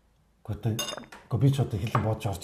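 A ceramic drinking bowl set down on a glass tabletop, giving a short ringing clink about a second in.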